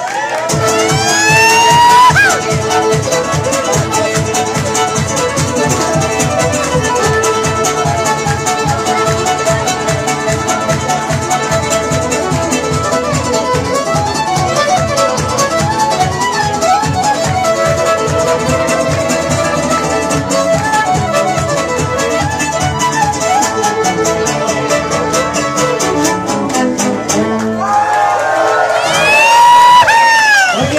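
Live acoustic guitar music with a steady fast beat, played to a packed, lively crowd. Loud rising whoops from the crowd about a second in and again near the end.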